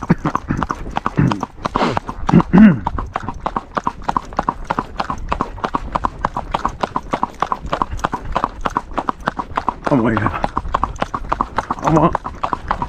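Hooves of a Paso Fino filly striking asphalt in a rapid, even four-beat gait, a fast steady patter of hoofbeats.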